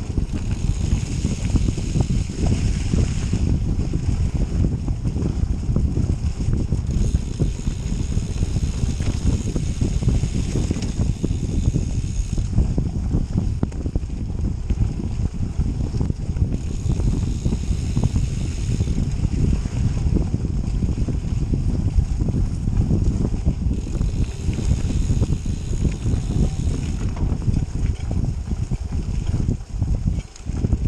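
Canyon Grail gravel bike riding over a leaf-covered dirt trail: a steady rumble of wind buffeting the handlebar-mounted camera's microphone, mixed with tyre and trail noise. A higher hiss comes and goes every few seconds.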